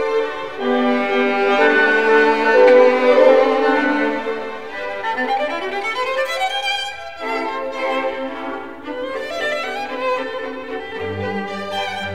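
Classical music for strings, with a violin carrying the melody over sustained notes; about halfway through a run of notes climbs upward, and low strings come in near the end.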